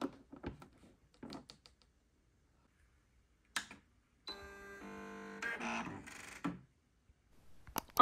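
A computerised sewing machine being plugged in and switched on: a few light clicks of the power cord going in, a sharp click of the power switch, then about two seconds of pitched electronic startup sound from the machine that changes tone halfway through.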